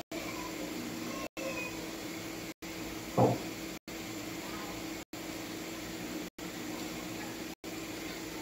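Steady low mechanical hum, cut by brief dropouts about every second and a quarter. About three seconds in, a woman gives a short "ừ".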